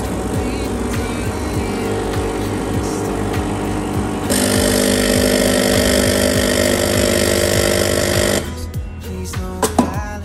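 Espresso machine pump humming as hot water runs through the empty group head into a stainless cup. It grows louder and hissier about four seconds in and cuts off abruptly near the end, with background music underneath.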